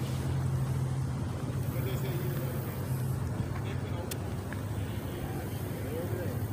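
Steady low hum of an idling vehicle engine, with a single sharp click about four seconds in.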